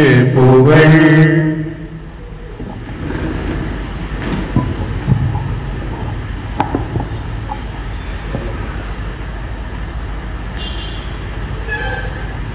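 A chanted voice ends about a second and a half in. After it comes a steady low rumble with a few knocks and sharp clicks as a stand-mounted microphone is handled and adjusted.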